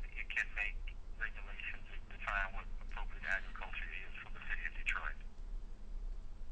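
A person speaking over a telephone line, the voice thin and narrow, stopping about five seconds in, with a low steady hum underneath.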